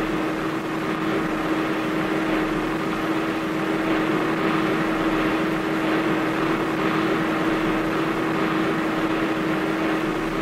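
Car driving at a steady cruise, engine and road noise heard from inside the cabin, with a constant steady drone and no change in speed.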